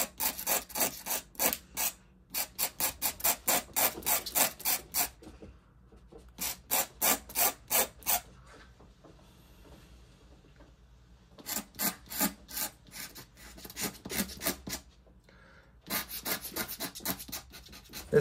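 Dip-pen nib scratching across paper with Indian ink in quick flicking strokes, about three or four a second, in runs with a pause of a few seconds a little past the middle.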